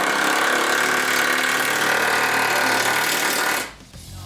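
A power tool running steadily on the underside of a car, cutting off abruptly near the end.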